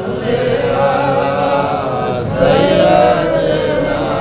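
Slow, melodic male chanting of Arabic devotional verses (salawat, blessings on the Prophet), with long wavering notes.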